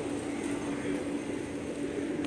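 A steady mechanical hum holding one pitch, over a light background hiss.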